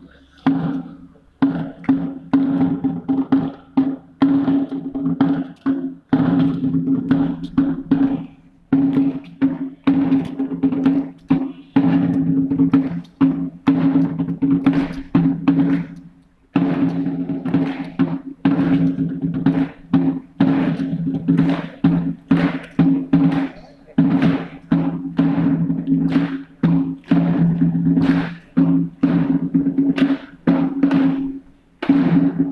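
Ceremonial military drum playing rapid strokes and rolls, with a few short breaks.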